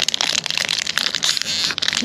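Foil wrapper of a trading-card pack crinkling as it is torn open by hand, a continuous crackly rustle.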